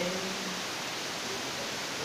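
The last held note of a chanted devotional verse fades out within the first half second, leaving a steady background hiss.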